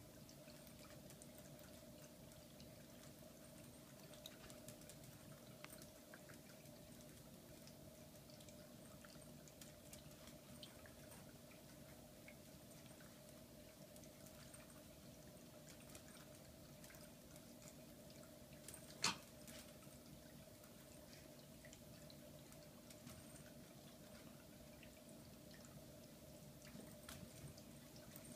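Near silence: room tone with a steady faint hum, a few faint scattered ticks, and one sharp click about nineteen seconds in.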